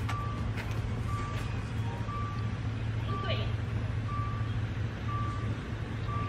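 An electronic warning beep at one steady pitch, repeating about once a second, over a steady low hum.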